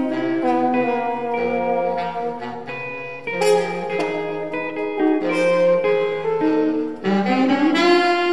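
French horn and baritone saxophone playing a jazz line together, the notes changing quickly, with a rising slide into a held low note near the end.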